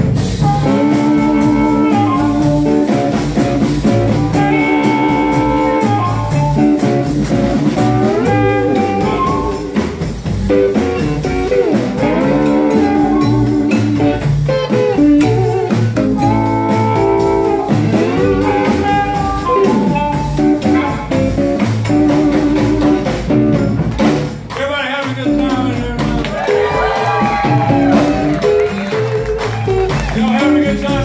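Live blues band playing with an amplified harmonica lead, cupped against the vocal microphone: long held notes with pitch bends over drums and guitar.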